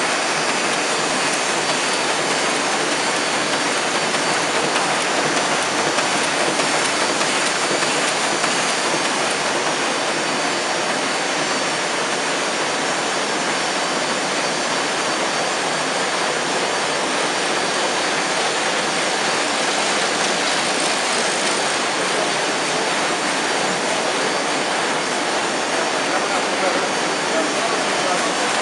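Heidelberg Speedmaster SM 102 F sheetfed offset printing press running in production, a loud, steady mechanical noise that holds at one level without letting up.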